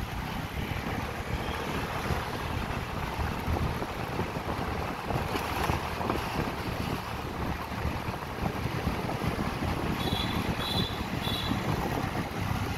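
Wind rushing over the microphone of a camera moving through city street traffic, over a steady rumble of traffic noise. Near the end there are three short, high beeps.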